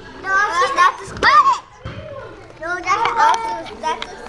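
Young children's voices talking and calling out, in two short bursts with a brief lull between them.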